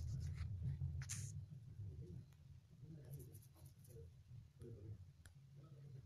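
Faint room noise: a steady low hum with scattered soft taps and scratchy rustles, and a short hiss about a second in.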